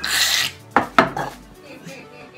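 A person gagging at a revolting taste: a loud, breathy half-second burst, then two short sharp gags about a second in.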